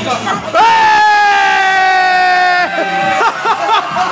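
A person's loud, high-pitched whoop, held for about two seconds with its pitch sagging slightly, then cut off sharply; quicker wavering voice sounds follow near the end.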